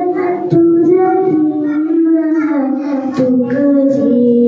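A young girl singing solo into a handheld microphone, holding notes and sliding between pitches in a melody.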